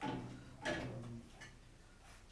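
A few sharp clicks and ticks as the newly fitted oven mode selector switch and its wired spade connectors are handled, the clearest about two-thirds of a second in.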